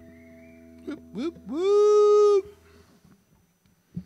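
The last guitar chord rings out and fades. About a second in a man's voice gives two short rising yelps, then slides up into one held howl of about a second that cuts off sharply.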